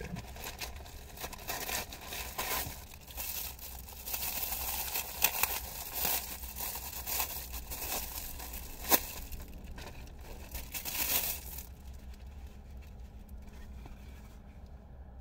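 Packaging of a mailed parcel being torn open and crinkled by hand, in irregular bursts of rustling and tearing that die down near the end as a steering wheel cover is pulled out.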